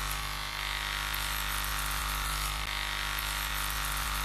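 Chainsaw sound effect, the engine running at a steady pitch without revving.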